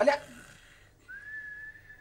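A single high whistle, held steady for about a second and dipping in pitch as it ends. It is called the cooker's whistle.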